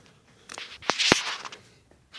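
A brief rustle with two sharp clicks about a fifth of a second apart, near the middle.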